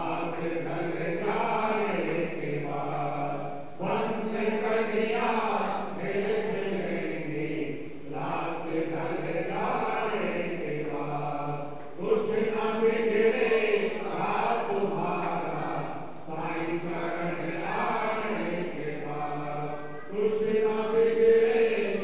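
Men chanting a devotional prayer to Sai Baba, led through a microphone, in repeated sung-spoken phrases about four seconds long.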